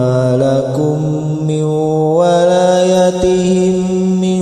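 A reciter chanting the Quran in murottal style, holding long drawn-out notes that step up and down in pitch without a pause for breath.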